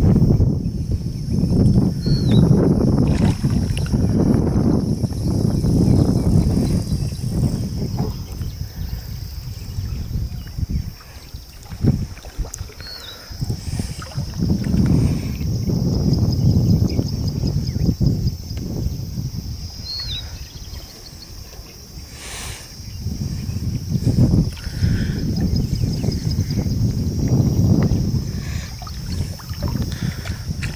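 Water sloshing and swirling around the legs of an angler wading waist-deep while playing a carp, swelling and fading in long waves. Three short high chirps sound over it, about 2, 13 and 20 seconds in.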